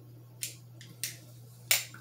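Three short, sharp clicks, the last and loudest near the end, as a large fixed-blade chopping knife is handled and set down.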